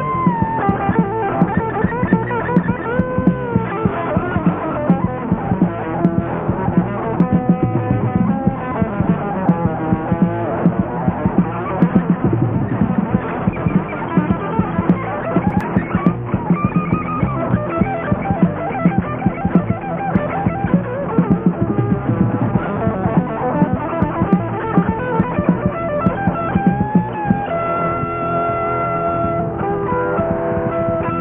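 Heavy metal band playing without vocals: an electric guitar lead with bent notes over bass and drums, moving into long held notes near the end.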